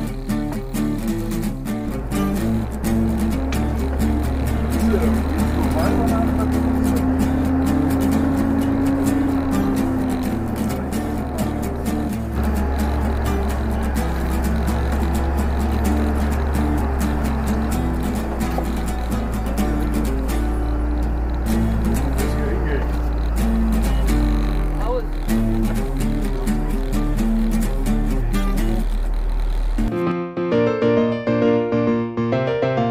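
Background music with a steady beat over a sustained low bass line.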